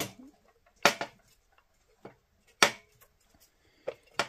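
A few sharp metal clicks and knocks, spaced about a second apart, as an aluminium crankcase side cover is worked by hand onto a small engine's crankshaft. The cover is a tight fit because its bearing is just barely not quite the right size.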